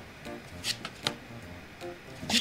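Playing cards being picked up and turned over on a wooden table, with two sharp card clicks about a second in, over soft background music.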